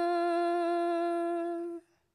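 A woman's unaccompanied voice chanting an Urdu nazm, holding one long steady note at the end of a line; it stops shortly before the end.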